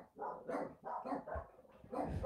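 Pet dog barking: a quick run of about four short, fairly faint barks, dying away in the last half second.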